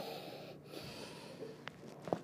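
A soft breath out as a patient lying on her back exhales during a manual chest manipulation, then a single faint click near the end.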